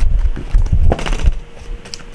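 Tarot cards being handled and shuffled by hand: a dense run of card clicks and slaps with dull knocks, loudest in the first second and thinning out after.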